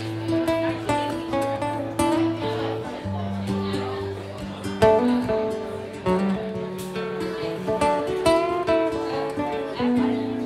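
Acoustic guitars playing a picked, melodic intro riff: single notes rising and falling over held bass notes.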